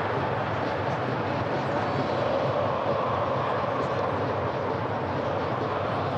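Football stadium crowd noise: a steady, even din of many voices in the stands.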